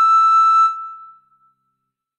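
A recorder holding one high, pure note, which stops about two-thirds of a second in and fades out over the next half second.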